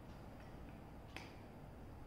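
Plastic LEGO pieces clicking together as a part is pressed onto the model: a single faint, sharp click a little over a second in, against near silence.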